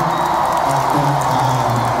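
Music in a stadium over the PA, with a large crowd cheering and shouting.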